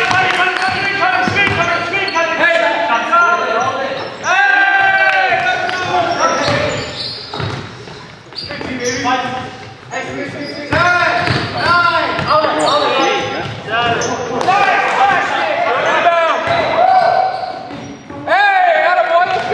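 Pickup basketball game on a hardwood gym floor: the ball bouncing, sneakers squeaking in short sliding chirps, and players' voices calling out, all echoing in a large gym.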